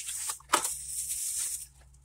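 A makeup blush palette being handled and opened: dry rustling with a single sharp click about half a second in, dying away near the end.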